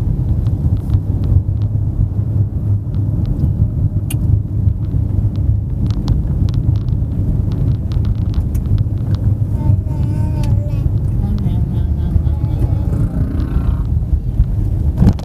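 Steady low rumble of a vehicle driving, heard from inside the cabin, with scattered light ticks and rattles.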